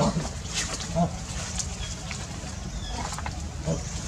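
Macaque giving two short, low calls, one about a second in and one near the end, with a few brief clicks and rustles over a steady low hum.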